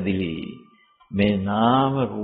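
An elderly Buddhist monk's voice reciting a sutta in a sing-song chanting tone. A phrase trails off, there is a short pause about half a second in, then one long drawn-out syllable with a gently wavering pitch.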